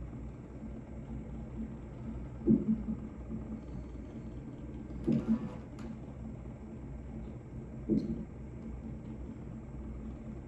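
A woman in labour breathing out in short, low moaning exhales about every two and a half seconds, a sign of contraction pain, over the steady low hum of the hospital room. There is a brief click about five and a half seconds in.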